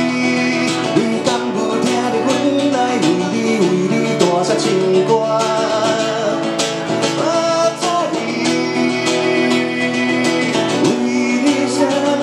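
A man singing into a microphone while strumming a steel-string acoustic guitar: a solo voice-and-guitar song performed live.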